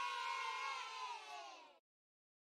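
A short recorded cheer from a group of children, a drawn-out "yay" that sinks slightly in pitch and cuts off suddenly near the end.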